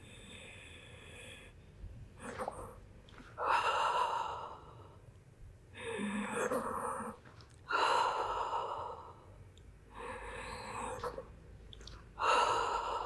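A woman breathing audibly through a Pilates rolling exercise: a run of long, rushing in- and out-breaths with short pauses between them, paced with each roll.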